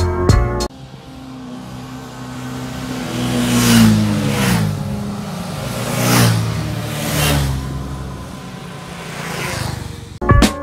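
Several motorcycles passing one after another at speed, each engine note dropping in pitch as it goes by. The loudest pass is about four seconds in, with further passes around six and seven seconds.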